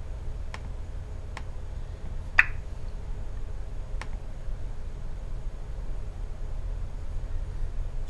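Four single clicks from a MacBook Pro's trackpad being pressed, a second or so apart, the third the loudest, over a steady low hum.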